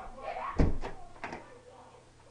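A wooden apartment door banged shut about half a second in, followed by a few lighter clicks and knocks from the latch and handle.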